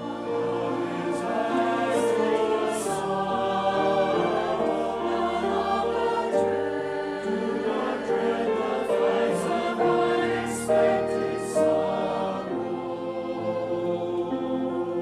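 Church choir singing a slow anthem in several parts, accompanied by violin; the words heard include "no longer dread the fires of unexpected sorrow" and "God, you are my God."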